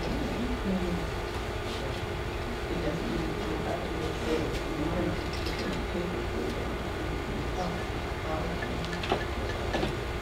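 A steady low hum with a constant tone, faint murmured voices under it, and a few light clicks of small tools handled on a table, one plainer near the end.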